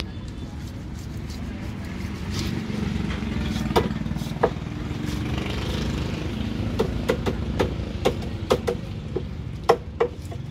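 Sharp knocks of a large curved fish knife striking through a marlin section and onto a wooden chopping block: two in the middle, then a quick run of about ten in the last three seconds. A steady low engine rumble runs underneath.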